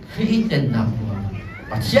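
A man's voice preaching a sermon, with rising and falling speech inflections.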